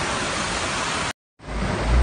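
Loud, steady rush of torrential storm rain and floodwater streaming across a street. It cuts off abruptly a little past a second in, and after a brief silence a low rumble begins.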